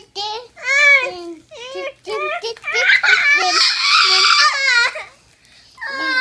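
A toddler girl's high-pitched squeals and giggles, with a long, loud shriek about three seconds in and a held high squeal near the end.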